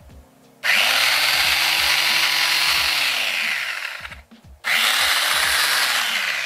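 Small electric detail sander with a triangular sanding pad, about 180 watts, switched on twice. Each time the motor spins up with a rising whine, runs steadily for about three seconds and winds down. It is running as a load on a portable power station's inverter output.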